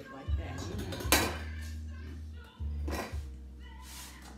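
A metal serving spoon clinks sharply against kitchenware twice, about a second in and again near three seconds, while sticky coconut-pecan topping is spooned onto a cake. A steady low hum runs underneath.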